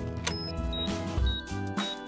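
Cartoon background music under a toy camera's self-timer: a click, then short high beeps about twice a second, counting down to the photo.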